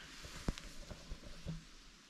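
A few soft, irregular knocks and taps over a faint steady hiss.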